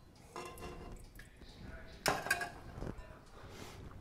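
A serving spoon scraping and knocking against a metal cooking pot as a cooked stuffed artichoke is lifted out, with a louder knock about two seconds in.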